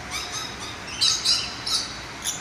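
Rainbow lorikeets giving a few short, shrill squawks, the loudest about a second in.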